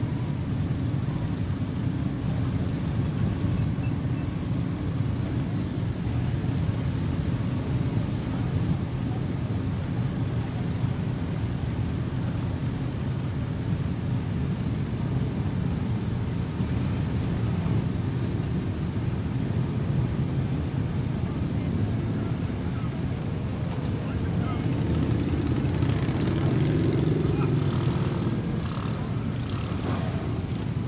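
Engines of many motorcycles riding slowly past in a long column, a steady mixed rumble that swells louder about three-quarters of the way through.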